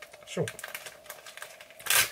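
Light clicks and taps of small tools and materials being handled on a fly-tying bench, with a louder sharp knock near the end.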